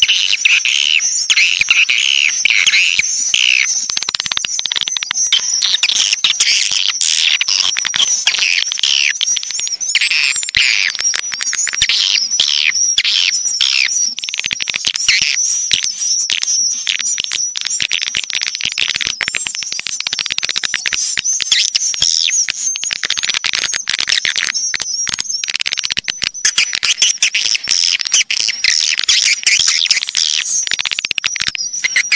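Recorded swiftlet calls: a dense, continuous stream of rapid high-pitched chirps and twitters. This is a swiftlet lure call (suara panggil walet), the kind played through speakers in swiftlet nest houses to draw the birds in.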